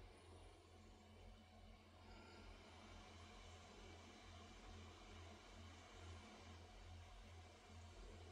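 Near silence: room tone with a faint low hum and hiss.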